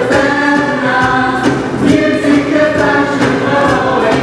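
A chorus of many voices singing a show tune in held notes, with a live band accompanying.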